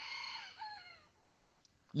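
A rooster crowing, fairly faint: the long last note of its crow slides down in pitch and dies away about a second in.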